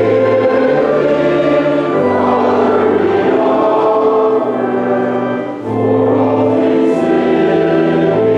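A choir singing a slow hymn in long held chords, with a brief dip between phrases about five and a half seconds in.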